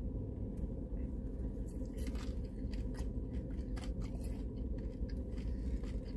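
Eating crispy fried chicken wings: chewing with scattered small crunches and light clicks of handling food, over a steady low hum inside a car cabin.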